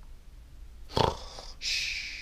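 A man's pretend-sleep noises: a brief vocal sound about a second in, then a long, hissing breath out.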